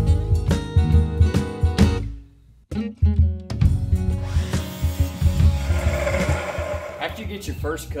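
Acoustic guitar background music, broken by a brief gap about two seconds in. After the gap a miter saw cuts through a wooden board for about three seconds, a hissing, whining cut over the music.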